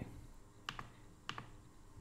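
Two faint computer keyboard key clicks, the second about half a second after the first.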